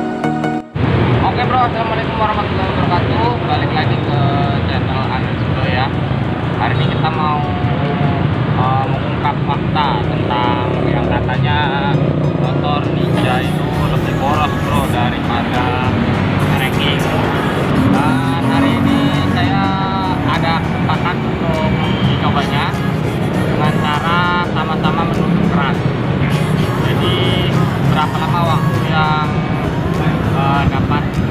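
A man talking over steady street traffic noise, with a brief snatch of intro music at the very start.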